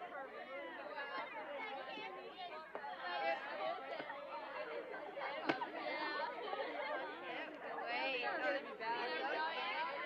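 Indistinct background chatter of many voices, children's among them, with no one voice standing out. A single short click comes about five and a half seconds in.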